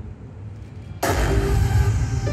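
Show soundtrack over a loudspeaker system: a low rumble, then a sudden loud hit with a deep rumble about a second in as the music kicks in.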